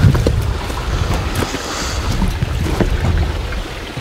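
Wind buffeting the camera microphone, a loud irregular low rumble, with a few short crunches of footsteps on rocky ground.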